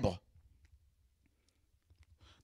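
The end of a spoken word, then a pause of near silence with a few faint, short clicks.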